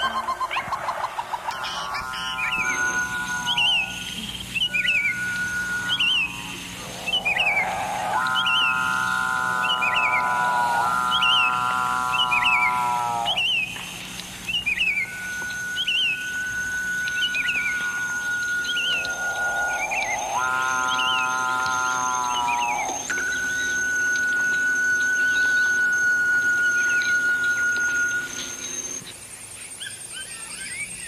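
A soundscape of short bird-like chirps repeating about once a second, over long steady whistling tones and several seconds-long buzzing tones that come and go.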